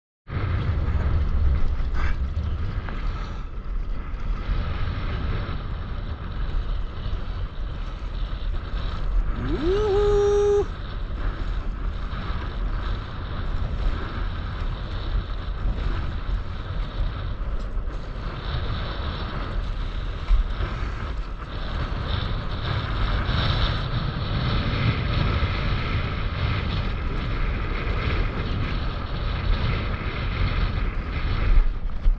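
Wind buffeting an action camera's microphone over the slosh and lap of choppy seawater around a stand-up paddleboard. About ten seconds in, a short pitched call glides upward and holds for about a second.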